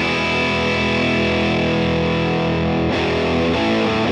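Gibson Les Paul electric guitar played through an overdriven amp: a chord is struck and left to ring for about three seconds, then new notes start near the end.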